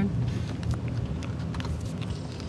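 Car driving slowly, heard from inside the cabin: a steady low rumble of engine and tyres on the paved lane, with a few faint ticks.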